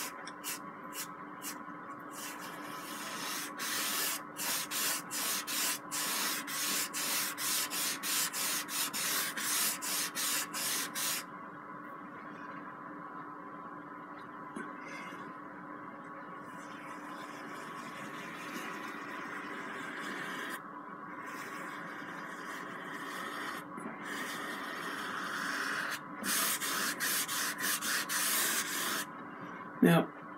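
Oil-paint brush rubbing across canvas in quick, repeated back-and-forth strokes, several a second. The strokes go quieter after about eleven seconds and pick up again near the end.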